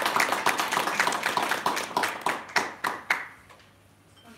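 A small audience applauding, the dense clapping thinning to a few last separate claps about three seconds in and then stopping.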